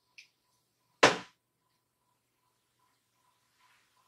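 A single short squirt from the pump of a Fenty Beauty liquid-foundation bottle, dispensing a pump of foundation onto a hand about a second in, with a faint click just before it.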